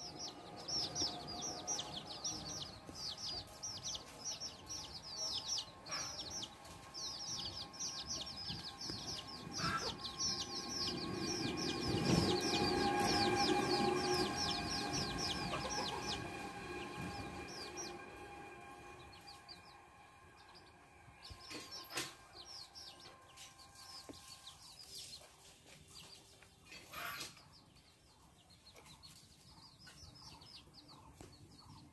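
Birds calling in a rapid series of high, falling chirps, several a second, that pauses briefly after the middle. A louder low sound swells and fades in the middle.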